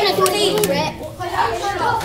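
Young girls' voices chattering over one another, with two sharp hand claps in the first second.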